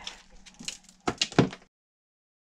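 Gritty scraping and crunching of loose rock worked by a gloved hand at a mine tunnel's rock face, in a few short rasps and sharp clicks, the loudest a little over a second in. The sound cuts off abruptly near the end.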